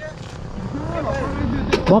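Faint background voices over a low rumble that grows louder, with a sharp click shortly before the end.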